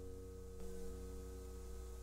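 The last chord of acoustic guitar music ringing out and fading, ending about half a second in, then a faint low hum.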